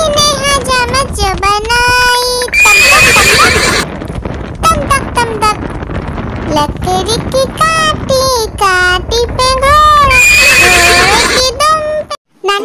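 A horse whinnying twice, about three seconds in and again near the end, over a voice singing a Hindi children's rhyme.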